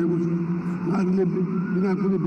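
A man's voice speaking Nepali into a podium microphone, reading a prepared speech in a slow, measured delivery.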